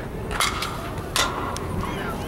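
A metal softball bat striking a pitched ball with a sharp ping and a short ring, followed less than a second later by a second sharp knock.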